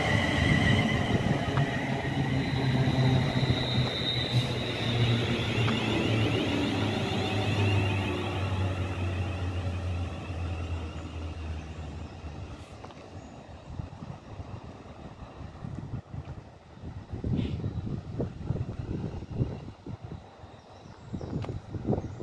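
London Northwestern Railway Class 350 Desiro electric multiple unit running in past the platform and slowing, its traction motors whining in several high tones over a low hum. The sound fades after about twelve seconds as the train draws away to the far end of the platform.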